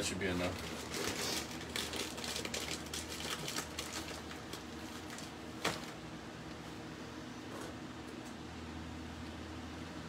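Crackling and clicking from a hot frying pan of oil and seeds as banana slices are laid in, busiest in the first few seconds, with one sharp click a little before the middle. A steady low hum runs underneath and is left alone near the end.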